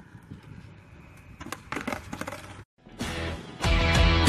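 Skateboard rolling on concrete with a few sharp clacks, then the sound cuts out abruptly and guitar music starts almost three seconds in, growing louder near the end.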